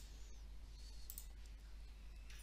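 Quiet room tone with a steady low hum and a couple of faint, light clicks, one at the start and one about a second in.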